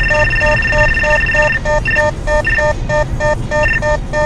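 Radar detector alarm: short beeps repeating about three times a second, with a higher tone held for about a second and a half at the start and then sounding as separate beeps, warning of a police speed radar. Car road noise runs low underneath.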